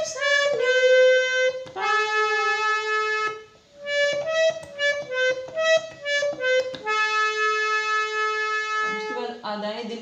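Harmonium played one note at a time, picking out a slow film-song melody. The line runs as short notes with two long held notes, and there is a brief break about three and a half seconds in.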